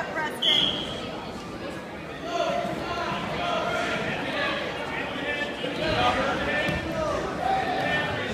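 Indistinct shouting voices of spectators and coaches echoing in a gym during a wrestling bout, with a short high-pitched squeak about half a second in.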